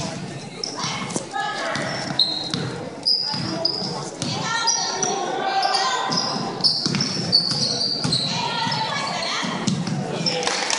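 A basketball dribbling on a hardwood gym floor, with sneakers squeaking in short high chirps as players run and cut. Voices of players and spectators call out over the echo of a large gym.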